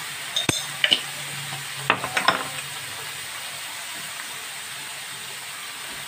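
A whole duck browning in hot ghee in a large aluminium pot, giving a steady sizzle. A few light clicks and taps come about half a second, one second and two seconds in.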